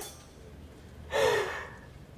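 A person's short, breathy sigh about a second in, falling slightly in pitch.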